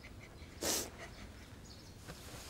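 A single short, breathy sob or sniff from a crying boy, a little under a second in; otherwise quiet.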